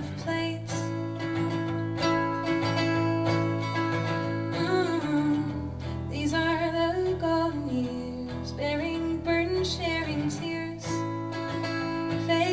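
Acoustic guitar played through an instrumental passage of a singer-songwriter's song, a continuous chord pattern over a steady bass line.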